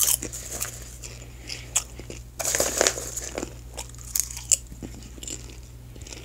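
Popcorn being chewed close to the microphone: irregular crisp crunches, with a denser run of crunching about two and a half seconds in.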